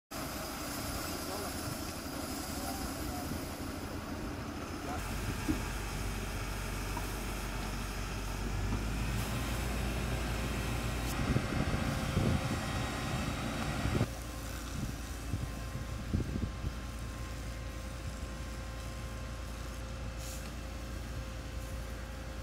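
Fire engine's engine running steadily with a low rumble, with a few short knocks over it; the sound changes abruptly about two-thirds of the way through.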